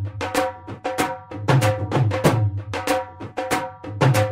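Punjabi dhol bhangra beat: a dhol drum plays a driving, repeating rhythm of sharp strikes over deep booms, with a steady held tone underneath.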